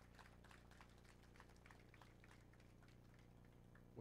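Near silence: a faint steady low hum with a few scattered faint ticks.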